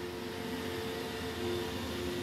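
Roomba robot vacuum running with a steady hum and a faint steady whine.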